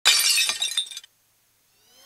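Glass-shattering sound effect of a breaking-news intro sting: a loud, sudden crash with crackling shards that cuts off about a second in. A rising swell begins near the end.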